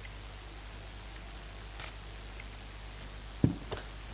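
Hands taking a SATA Adam clip-on digital air gauge off a spray gun, heard as a faint click about two seconds in and a sharper knock near the end, over a steady low electrical hum.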